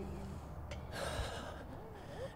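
A short voiced murmur trails off at the start, then a person takes an audible breath, a gasp or sigh, about a second in.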